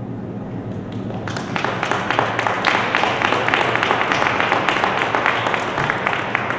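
Audience applauding, the clapping starting a little over a second in and building to a dense, steady applause.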